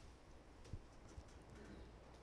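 Near silence with room hum and three faint taps of a stylus on a tablet screen.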